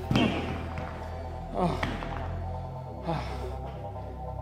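A pair of rubber hex dumbbells set down on the gym floor with a thud just after the start, over background music.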